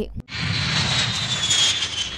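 Jet aircraft engine sound, a steady rush with a high whine that slowly falls in pitch, starting suddenly just after a brief gap.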